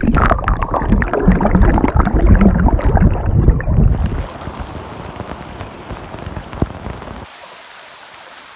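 Churning water and bubbles heard through a camera held underwater below a small waterfall: a loud low rumbling with gurgling. About four seconds in the camera comes out of the water and the sound turns to the steady hiss of the falling water.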